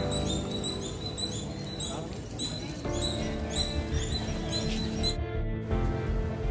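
Background music with a repeating high note figure, about two notes a second, over held lower tones.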